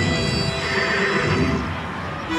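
A recorded horse whinny, wavering in pitch for most of two seconds, played as a sound effect over background music.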